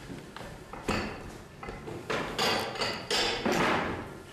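Children getting up and moving about a classroom: a sharp knock about a second in, then two longer scuffing, rustling noises near the end.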